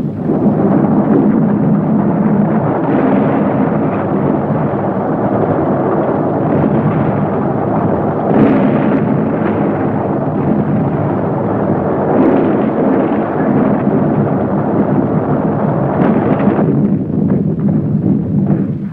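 Battle noise on an old war-film soundtrack: a dense, steady rumble with several louder swells, a few seconds apart, like explosions.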